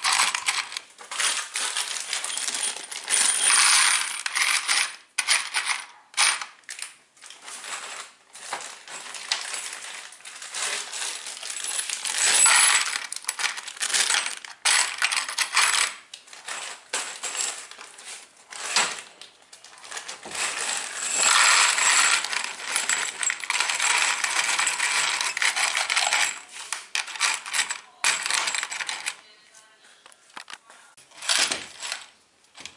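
Loose metal screws clinking and rattling against each other and the plastic tray as a hand shifts them around in the compartments of a PVC-pipe organizer. The rattling is irregular and goes on with only brief pauses.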